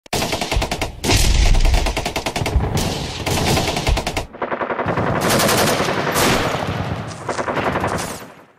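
Bursts of rapid automatic gunfire, with short breaks about a second in and just after four seconds, fading out near the end.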